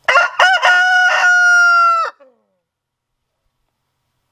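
A rooster crowing loudly: a few short, choppy opening notes, then one long held note that cuts off about two seconds in.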